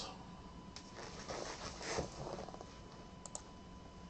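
Faint clicks and taps of a computer mouse and keyboard, with a few small sharp clicks near the end.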